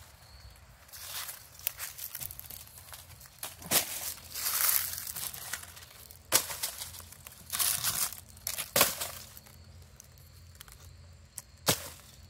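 Dry leaf litter crunching and rustling under footsteps, then pieces of bark being pulled off and handled, with a few sharp cracks and knocks along the way.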